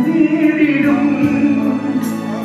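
A man singing a devotional song into a microphone, holding one long note before the melody falls away, over an accompaniment with a steady light beat of about four ticks a second.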